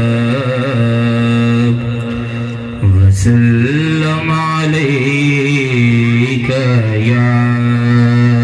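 A man singing a naat into a microphone in long, held, ornamented notes over a steady low drone. There is a short dip about three seconds in, and a louder phrase starts right after it.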